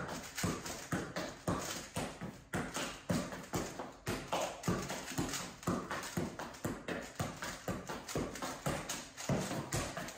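A football kept up with the feet and knees, each touch a dull knock in a steady rhythm of about two to three a second.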